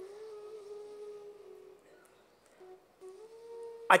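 A voice softly humming a held note that wavers slightly in pitch, breaks off about two seconds in, and comes back with a short rising glide near the end.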